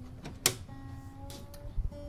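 Handling sounds from an acoustic guitar: a sharp click about half a second in and a dull knock near the end, while the guitar's strings ring faintly with a few steady tones.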